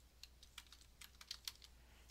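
Faint computer-keyboard keystrokes: an irregular run of about a dozen clicks as text is typed, over a low steady hum.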